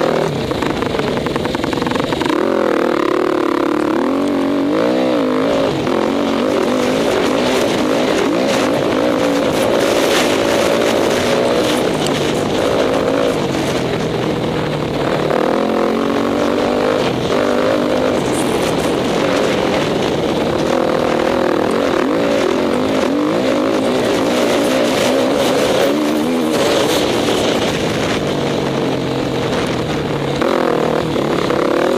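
Enduro motorcycle engine heard from on board, its pitch rising and falling constantly as the rider works the throttle and gears, with frequent knocks and rattles from the bike over rough ground.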